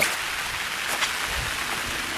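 Light rain shower falling on broad leaves: a steady hiss with a couple of faint drop ticks about halfway through.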